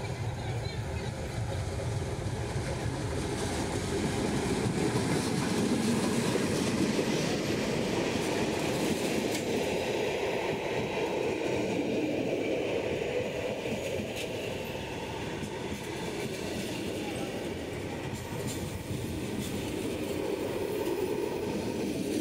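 GM G22CU diesel-electric locomotive, with its two-stroke EMD 12-cylinder engine, passing close while hauling a passenger train. It is loudest about six seconds in as the locomotive goes by, then the coaches roll past with clattering wheels on the rails.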